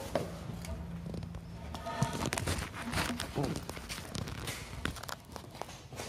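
Wooden knocks, scrapes and rustling as a long cedar four-by-four post is handled and shifted around, with sharper knocks about two and three and a half seconds in.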